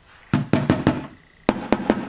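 A hand knocking on an LED wall pack fixture: a quick run of four knocks, a short pause, then three more.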